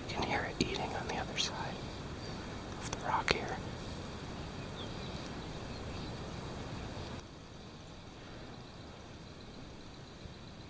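Hushed whispering in short bursts during the first few seconds, over steady low background noise that drops in level about seven seconds in.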